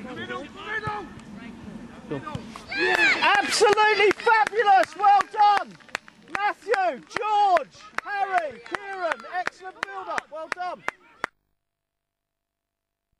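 Touchline spectators yelling excitedly as an attack closes on goal. A high voice shouts short calls over and over, about twice a second, from about three seconds in. The sound cuts off suddenly just before the end as the recording drops out.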